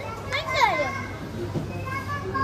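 A boy's voice speaking in a high, sliding pitch over a steady low hum.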